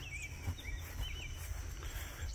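Outdoor country ambience: a bird gives several short chirps in the first second, over a steady high-pitched insect drone and a low rumble.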